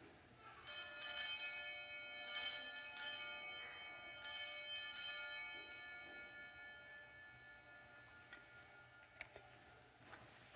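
Altar bells (sanctus bells) rung in three shakes at the elevation of the consecrated host, each jangling peal ringing on and fading slowly. A few faint clicks follow near the end.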